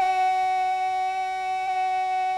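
A parade commander's drawn-out shouted drill command, one long call held on a steady pitch.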